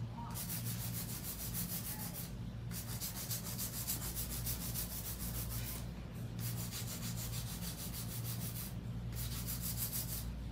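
Hand file rasping back and forth across a long acrylic nail in quick, even strokes, with three brief pauses, smoothing out unevenness in the nail's surface.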